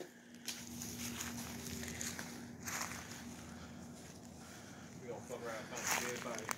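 Faint footsteps through dry leaf litter and debris, over a steady low hum. A man's voice is faintly heard near the end.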